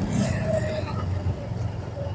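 Motorcycle running along a city street, a steady low engine and road rumble with traffic noise around it.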